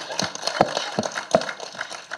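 A few scattered sharp clicks, roughly one every half second, over faint room noise.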